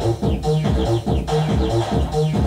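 Roland MC-303 Groovebox playing a techno-style pattern: a drum beat under short, repeating synth bass and lead notes.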